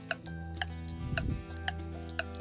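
Quiz background music: a ticking clock-like beat, about two ticks a second, over held low chords.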